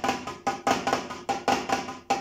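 Drumsticks playing a rudiment on a Roland electronic drum kit's mesh snare pad: a variation on the pataflafla, four-note groups of right flam, left flam, right, left, at about five strokes a second.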